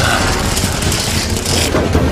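Loud, dense action-film sound-effects mix with a steady heavy low rumble.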